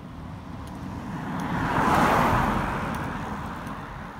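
Time-trial bicycle with a rear disc wheel passing close at speed: a whoosh of tyres and wheels that swells to a peak about halfway through and fades as the rider goes away.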